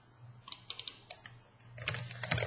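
Computer keyboard keystrokes: a few separate key clicks about half a second to a second in, then a quick run of clicks near the end.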